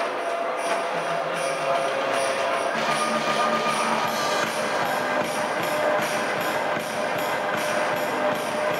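Music played over an arena sound system, with a steady beat of high, bright percussion hits and held notes: the accompaniment to a dressage freestyle ridden to music.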